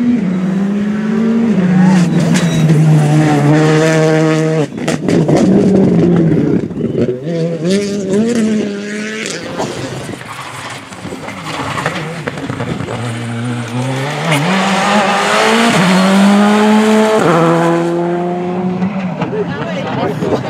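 Rally cars driven flat out on a stage, engines revving high and climbing in pitch through quick upshifts. A run of sharp cracks follows the first set of upshifts, the sound dips for a few seconds around the middle, and then a second car revs up through its gears.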